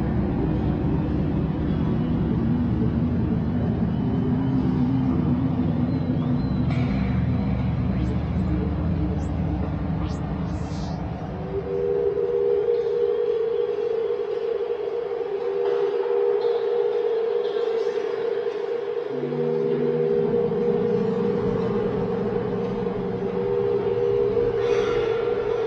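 Ambient drone soundscape: a low rumbling drone fills the first half, then about halfway a steady pair of sustained tones comes in and holds, with a lower held tone joining near the end. A few brief high pings sound in between.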